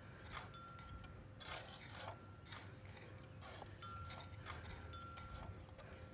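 Garden hoe chopping and scraping through loose soil, faint, a stroke every second or so.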